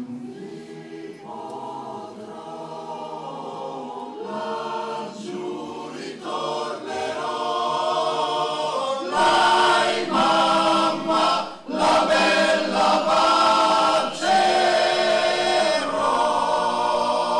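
Male choir singing sustained chords in harmony, the voices swelling noticeably louder about nine seconds in, with a brief breath break shortly after.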